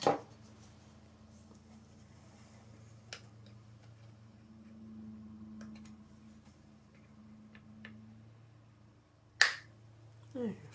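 Quiet handling of a painted wooden loon carving while a chunk of paint is picked off its bill: a few light clicks and one sharp click near the end, over a faint steady hum.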